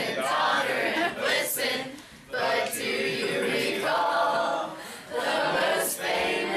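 A group of teenagers singing a Christmas carol together, in sung phrases with brief breaks between lines.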